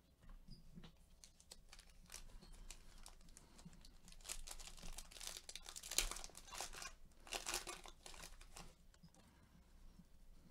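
Foil wrapper of a 2019-20 Panini NBA Hoops trading card pack crinkling and tearing as it is opened by hand. The crackling is loudest from about four to nine seconds in, with one sharp crackle near the middle.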